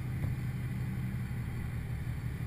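A steady low mechanical drone: the running machinery of an offshore drilling rig, heard high in the derrick.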